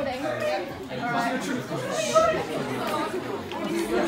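People talking indistinctly: room chatter.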